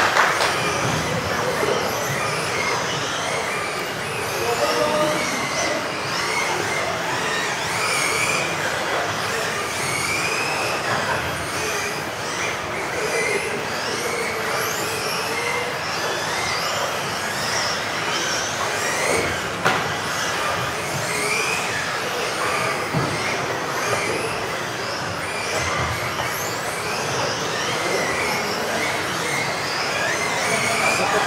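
Several electric RC off-road cars racing, their motors whining in overlapping tones that rise and fall in pitch as they accelerate and brake, over a steady hiss.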